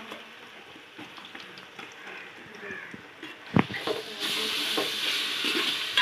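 Wet onion and masala paste being mixed by hand in a large aluminium pot. There is a knock about three and a half seconds in, then a louder steady hissing mix from about four seconds in.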